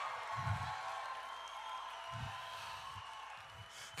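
Congregation cheering and clapping in response to the preaching, dying away over a few seconds. Two soft low thumps come about half a second and two seconds in.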